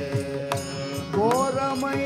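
A live devotional bhajan group playing Carnatic-style music: a steady held drone, with drum and cymbal strokes throughout, and a voice that starts singing about a second in.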